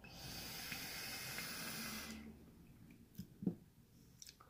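A long hissing draw of breath through a box-mod vape, lasting about two seconds, then two short low thumps near the end.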